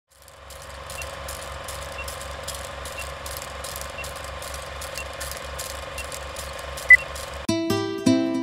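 Old film-projector countdown effect: a steady projector hum with rapid even clatter, a small tick every second and a short beep near the end. Acoustic guitar music starts just before the end.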